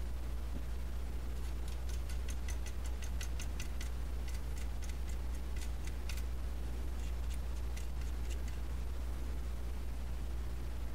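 Hand ratchet clicking in three short runs of quick, even clicks as bolts are run in, over a steady low hum.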